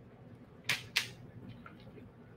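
Two sharp little clicks about a third of a second apart, near the middle, with a few fainter ticks after: small beads clicking against each other and the table as they are picked up and strung onto beading wire.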